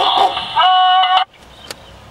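Broadcast sound from a small portable digital TV receiver's speaker: a moment of speech, then a steady held note, which cuts off abruptly a little after a second in as the receiver drops the channel and tunes to the next one, leaving a low hiss and a single faint click.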